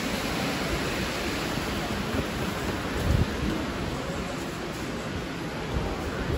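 Steady rushing and splashing of an indoor fountain's water jets in a shopping-centre hall, with a single low thump about three seconds in.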